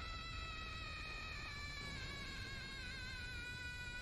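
Soundtrack of an anime clip playing back: one steady high-pitched tone with overtones, held throughout over a low rumble.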